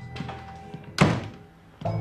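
A wooden office door slammed shut once, a single loud thunk about a second in, over soft background music that fades briefly after the slam and comes back louder near the end.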